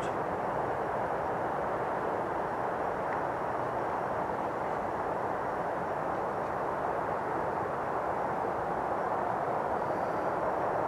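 Steady outdoor background noise: an even hiss with no distinct events.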